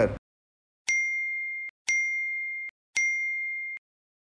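Three identical electronic ding tones about a second apart, each holding one clear high pitch for under a second and cutting off sharply: a news channel's end-card sound effect.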